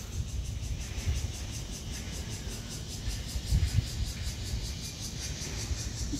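Wind rumbling on the microphone of a handheld camera outdoors, a steady low buffeting with no distinct events.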